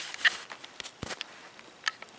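Handling noise from the recording device being picked up and moved: a scatter of light knocks and rubs, the sharpest about a quarter second in, a dull low thump around a second in, and another sharp click near the end.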